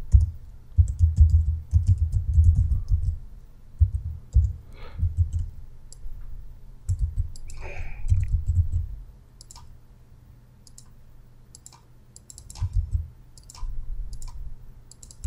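Computer keyboard typing in uneven bursts of keystrokes, each key a short click with a dull low thump. There is a lull of a few seconds before more keystrokes near the end.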